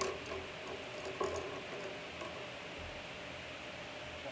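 A few light clicks of coloured pencils being handled on a table, then a pencil colouring on paper, over a steady room hiss.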